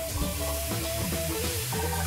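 A steady sizzle of a beef steak (morrillo) and French fries frying in hot oil, under background music with long held notes and a low bass line.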